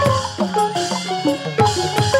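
Burmese hsaing waing ensemble playing a fast instrumental passage of quickly struck tuned drums and gongs, several notes sliding down in pitch just after each stroke.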